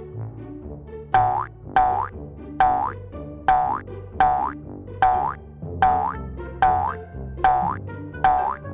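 A cartoon boing sound effect repeats about every 0.8 seconds, nine times in all. Each is a short twang that falls in pitch, laid in time with bounces on a trampoline over light background music.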